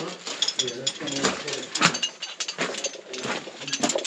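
Irregular clicks, knocks and scuffs of people moving over a rocky floor, with faint voices in the background.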